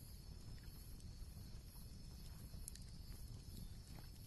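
Near silence: a faint, steady low background hum with a few soft ticks.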